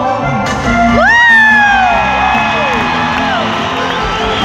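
Live band music played through a concert PA, with the crowd cheering. About a second in, a high whoop swoops up in pitch and then slides slowly down.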